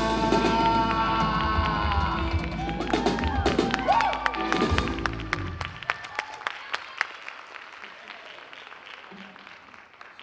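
Live rock band with a singer finishing a song: sung and played notes held over drums, which die away about halfway through. Scattered clapping from the audience follows.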